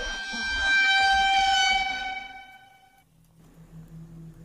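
A loud, sustained horn-like tone made of several pitches at once, held steady for about three seconds and then cutting off.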